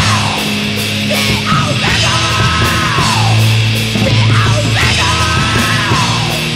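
Hardcore punk song played by a full band: distorted guitar, bass and fast drums with cymbals, under yelled vocals. The yelled lines come in repeated phrases that fall in pitch, about every two seconds.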